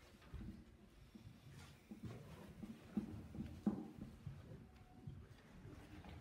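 Faint knocks and rustling from a person settling at an upright piano and setting out sheet music, with two sharper knocks about three and three and a half seconds in.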